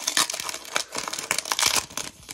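Shiny foil wrapper of a Panini Prizm Monopoly NBA trading card pack crinkling and tearing as it is ripped open by hand, a dense run of crackles.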